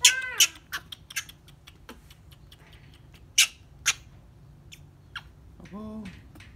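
Baby monkey crying: high, arching squeals at the start, then a run of short, sharp squeaks and clicks. The two loudest come a little past halfway.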